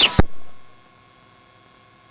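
The tail of a police radio transmission cuts off a fraction of a second in, ending in a short burst, and leaves a faint steady hiss and hum with a thin steady tone.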